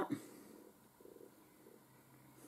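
Quiet room with a faint sniff about a second in, as someone breathes in perfume sprayed on the back of her hand.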